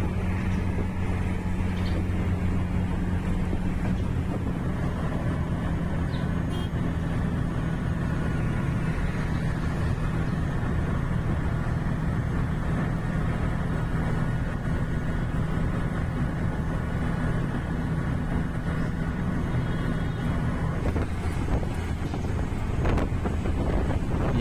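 Auto-rickshaw engine running steadily at cruising speed, heard from inside the open cab with road and traffic noise around it.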